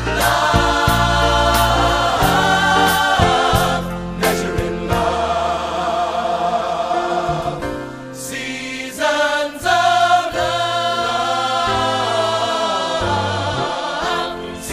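A cast ensemble singing a gospel-style choral ballad with band accompaniment: several voices together over a sustained bass line and sharp percussive hits.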